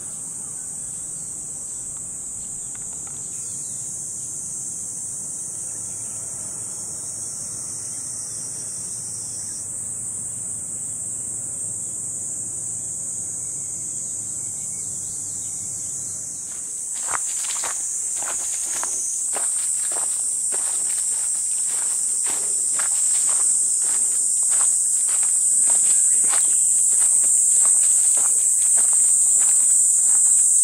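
A steady high-pitched insect chorus that grows louder in the second half. A little over halfway through, footsteps begin, about two a second, on a path of dry fallen leaves.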